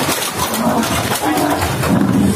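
Fighting bulls giving a few short, low grunts over a noisy street scuffle.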